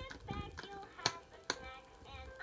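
Electronic baby toy playing a tune with a synthetic singing voice. Two sharp clicks, about a second in and a second and a half in, stand out above it.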